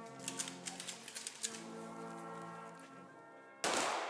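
A brass band playing a slow mournful piece in long held chords, with sharp faint clicks over it. Shortly before the end a short, louder burst of noise breaks in.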